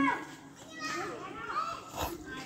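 Background chatter of children's and other voices, fainter than the singing on either side.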